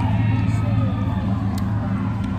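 A steady low rumble with faint voices in the background.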